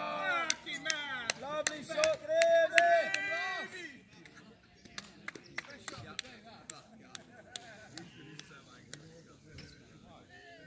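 Men's voices calling out loudly across a cricket field for the first four seconds or so, then fainter voices, with scattered sharp claps throughout.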